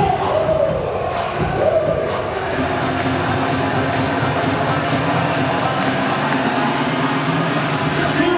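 Cheer music over an arena sound system with crowd voices. A chant-like rise and fall of voices in the first two seconds gives way to steady, held music.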